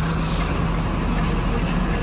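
Steady engine hum and road noise of a moving vehicle, heard from inside its cab.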